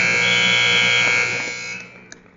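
Gym scoreboard clock buzzer sounding one long, steady blast that fades out under two seconds in, marking the end of a wrestling period as the clock runs out.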